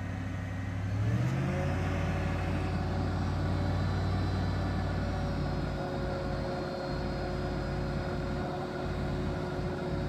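A 2001 Chevy 3500 dump truck running while its hydraulic hoist tips up the loaded dump bed. The pitch rises about a second in and then holds steady.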